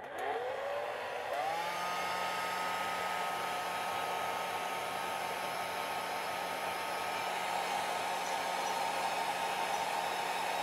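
Hair dryer switched on: its motor whine rises in pitch in two steps over the first two seconds, then runs at a steady pitch over an even rush of air.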